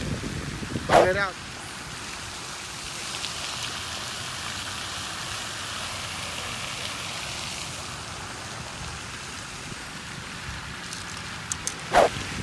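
Light rain falling on a pond, a steady hiss, with a few faint ticks near the end.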